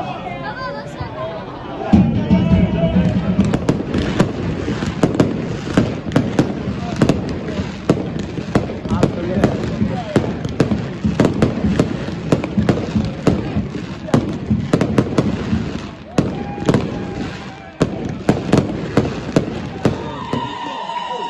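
Fireworks going off in a rapid, irregular barrage of bangs and crackles that starts suddenly about two seconds in and keeps going, with crowd voices underneath.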